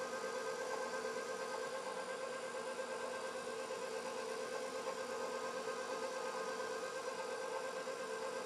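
KitchenAid stand mixer motor running steadily while it beats cake batter, a constant hum with a steady whine.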